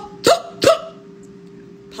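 Two short, sharp, hiccup-like vocal tics in quick succession in the first second, each with a quickly falling pitch: involuntary vocal tics of Tourette syndrome. A steady low hum runs underneath.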